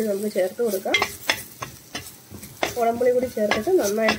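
Steel spoon stirring and scraping chilli masala paste around a black iron pan as it fries, with sizzling and several sharp knocks of the spoon against the pan. There is a quieter stretch in the middle.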